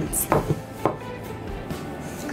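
Wooden rolling pin rolling over cookie dough and knocking on a tabletop: a few light knocks in the first second, then quieter rolling.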